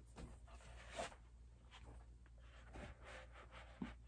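Near silence with faint rustling and soft taps as socked feet slip into foam bubble slides, one slightly louder tap about a second in.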